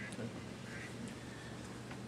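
Quiet room tone with a few faint, brief sounds.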